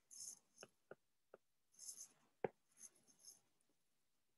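Faint taps and light scratches of a stylus on a tablet's glass screen as handwritten notes are marked up: several short clicks, the sharpest about two and a half seconds in, with a few brief stretches of soft scratching.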